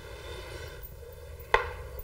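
Quiet room tone with a single sharp tap about one and a half seconds in.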